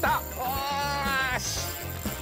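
A man's single drawn-out vocal cry, held for about a second, over background music with a steady bass line.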